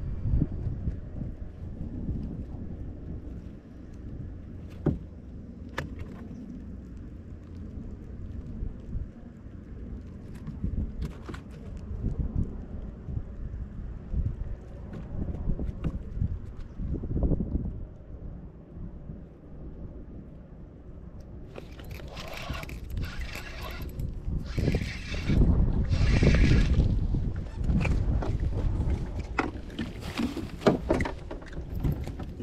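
Wind buffeting the microphone, with a few sharp clicks. About two-thirds of the way through come three or four loud bursts of splashing as a hooked fish is brought up to the kayak.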